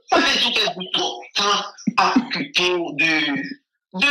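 A man's voice speaking in several short, loud bursts, stopping about half a second before the end.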